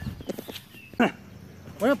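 A dog barks once, a short bark about a second in, after a few faint clicks.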